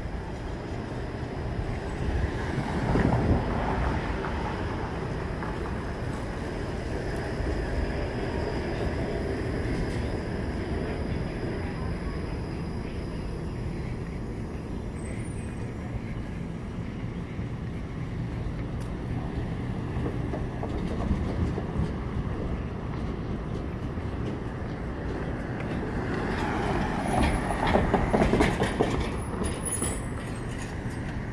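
City street traffic noise runs steadily, with a vehicle swelling past about three seconds in. Near the end it grows louder as a Toronto streetcar approaches along its rails.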